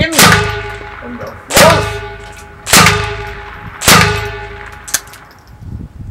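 Four gunshots about a second apart, each followed by a metallic ringing that dies away, then a fainter, sharper crack near the end.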